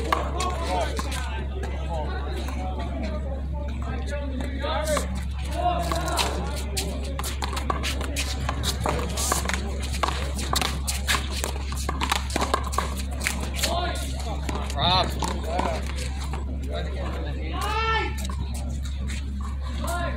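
One-wall handball rally: the small rubber ball slapping sharply off the concrete wall and players' gloved hands in a string of quick impacts, with players' voices at times.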